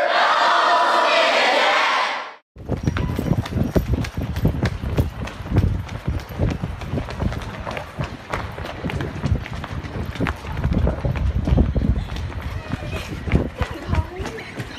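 A crowd chanting in unison for about two seconds, cut off abruptly. Then quick irregular footsteps of people running, with rumbling handling noise on a handheld microphone.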